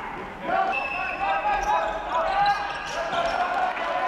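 Live basketball play on a hardwood court in a large hall: the ball bouncing, with players calling out and shouting. Short high squeaks from sneakers are scattered through it.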